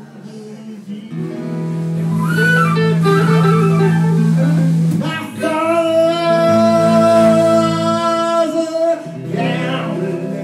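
A small live blues band playing: acoustic and electric guitars under long held lead notes, getting louder about a second in.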